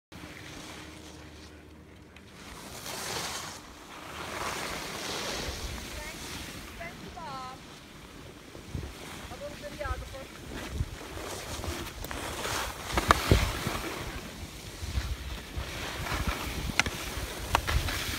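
Wind buffeting the microphone of a camera carried by a moving skier, over the hiss and scrape of skis on packed snow, rising and falling in gusts. A few sharp clicks come in the second half.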